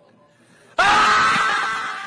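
A voice screaming: a high, harsh scream starts almost a second in and slowly fades.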